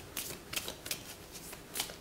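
A deck of tarot cards being shuffled by hand: a string of short, crisp card flicks at an uneven pace.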